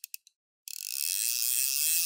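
Spinning fishing reel ratcheting in a fast pull, a dense high buzz of clicks. It opens with a few fading clicks and a brief stop, then the fast buzz starts again about two-thirds of a second in.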